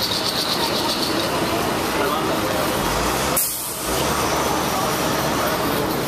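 Busy street noise: traffic running and people talking. A high steady whine stops about a second in, and a short sharp hiss followed by a brief dip in level comes about three and a half seconds in.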